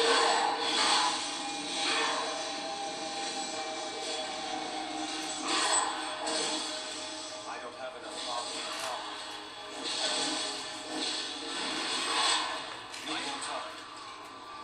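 Television sound in the room: music with voices that can't be made out, and a few short swells of louder sound.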